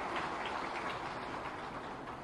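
Audience applause, a dense patter of hand claps that thins out and dies away.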